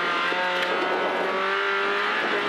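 Renault Clio rally car's 1600 cc engine running hard at high revs, heard from inside the cabin, its pitch holding steady and rising slightly near the end.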